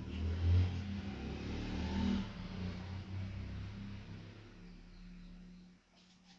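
Engine of a passing motor vehicle: a low hum that swells in the first second and then fades away near the end.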